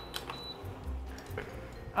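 Small kofte (meatballs) frying in oil in a pan, a faint sizzle with a few light clicks and a short, faint high tone near the start.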